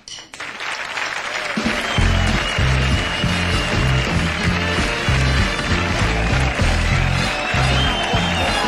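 The studio house band plays an upbeat walk-on tune over audience applause. A heavy, steady bass line comes in about a second and a half in.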